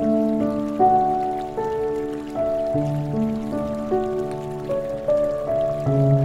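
Slow, calm piano music, sustained notes and chords changing about every second, with a soft patter of rain beneath.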